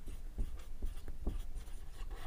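Marker pen writing on a whiteboard: a quick series of short, faint strokes as letters are drawn.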